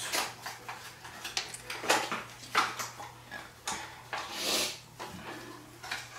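Light clicks and knocks of cutlery and dishes being handled at a table, spread irregularly through the few seconds, with a short rustle about four and a half seconds in.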